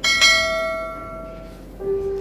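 A bright bell-like chime struck once, ringing out and fading over about a second and a half. An electronic keyboard note comes in near the end.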